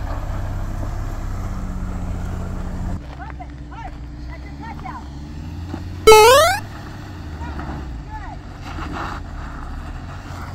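Ford Bronco engines running with a steady low drone as the trucks crawl up a sandy off-road climb, louder for the first three seconds. Onlookers' voices are faint, and a loud rising whoop comes about six seconds in.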